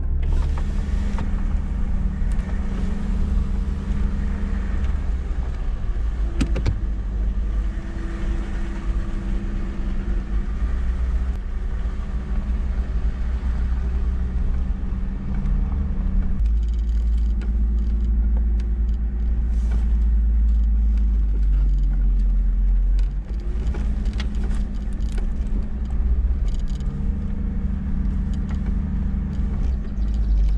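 Mercedes-Benz G-Class engine and drivetrain running as the vehicle drives slowly over dirt and sand tracks: a steady deep drone that shifts about halfway through, with a few short knocks and rattles.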